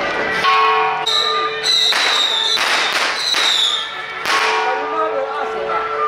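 Temple procession music and noise: steady pitched tones, broken by a run of loud, sharp crashes between about two and four and a half seconds in.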